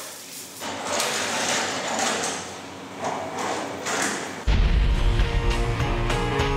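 A rushing, swelling noise, then background music with a strong bass line cuts in about four and a half seconds in and carries on.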